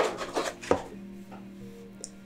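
A few short rustles and taps in the first second as paper leaflets and a magazine are handled in a cardboard box, over quiet background music.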